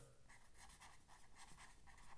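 Faint scratching of a felt-tip marker writing letters on paper, a run of short strokes.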